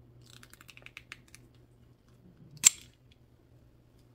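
Metal paint tube crinkling as it is wound on a metal tube-squeezing key: a quick run of small crackles and clicks, then one sharp, loud click about two and a half seconds in.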